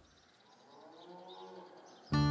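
A dairy cow mooing faintly: one long call that rises and falls in pitch, swelling and fading over about a second and a half.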